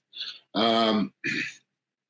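A man's short non-word vocal sounds: a faint breathy sound, then a held voiced sound of about half a second and a shorter one after it, of the kind made when clearing the throat.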